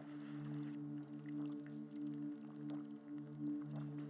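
Soft ambient pad chord, a few low steady tones held and swelling gently in and out, played as quiet background music. A brief soft rustle comes in the first second.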